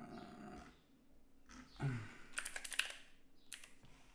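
Typing on a computer keyboard: a quick run of keystrokes about halfway through and a couple more just before the end.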